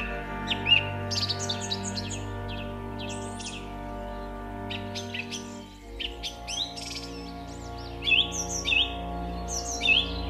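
Birds chirping and calling in quick runs of short, sweeping notes over a soundtrack of steady, held music chords, which break off briefly just before the middle and resume.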